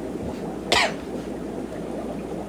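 A single short cough about three quarters of a second in, over a steady background hiss.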